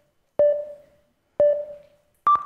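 Electronic countdown beeps: two short beeps of the same pitch, one second apart, each ringing out briefly. They count down to the start of a timed 180-second talk.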